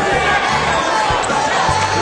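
Basketball dribbled on a hardwood court, a few separate thuds, over steady noise from a large arena crowd.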